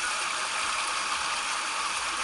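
Water running down a water slide: a steady rushing hiss.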